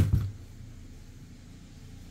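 A single short knock right at the start, then quiet room tone with a faint steady low hum.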